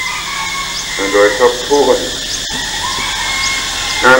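An elderly monk's voice speaks a few words through a microphone, with long pauses, over steady hiss from an old tape recording. The sound cuts out for an instant midway.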